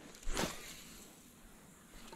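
A fishing rod swishing through the air on a cast, once and briefly, about half a second in.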